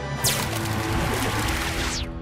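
Cartoon sound effect of a blown-off head re-forming: a long hissing whoosh that sweeps up at its start and falls away at its end, over background music.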